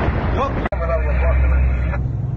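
Steady low engine drone inside a moving vehicle's cabin, starting after an abrupt cut about two-thirds of a second in, with voices over it. Before the cut there is a noisy jumble of voices.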